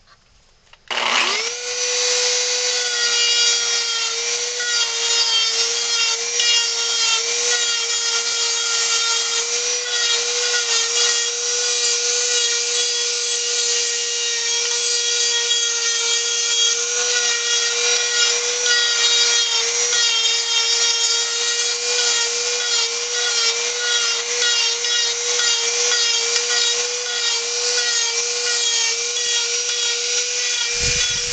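A handheld Dremel rotary tool switches on about a second in and spins up to a steady high whine. It keeps running while its bit carves into wood, and the pitch wavers slightly as the bit bites.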